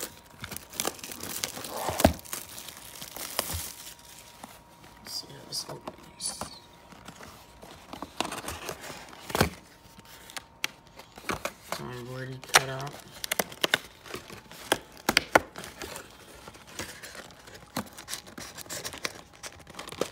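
Cardboard trading-card hobby box being handled and its lid flap torn open: scattered crinkling, tapping and tearing of cardboard, with foil card packs rustling. A short murmured voice about twelve seconds in.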